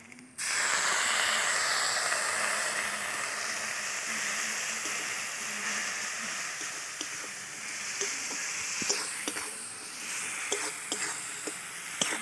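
Water poured onto spice powders in hot oil in a metal kadai sets off a loud sudden sizzle about half a second in, which slowly dies down. From about three-quarters of the way through, a metal spatula scrapes and taps against the pan as the masala is stirred.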